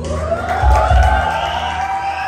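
A man singing one long held note that slides upward in pitch, into a microphone over a backing track with deep bass hits.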